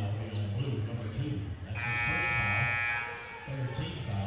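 Gymnasium scoreboard horn sounding one steady buzz of about a second and a half, about two seconds in, over the murmur of the crowd in the gym.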